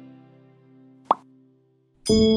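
Sustained intro music notes fading out, cut through about a second in by a single short pop sound effect with a quick upward pitch sweep, the button-click sound of a subscribe animation.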